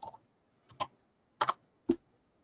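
A few separate keystrokes on a computer keyboard, about five short clicks spread unevenly over two seconds.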